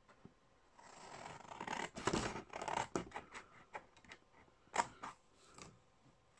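Scissors cutting through a sheet of scrapbooking paper: a run of short snips with paper rustling, starting about a second in.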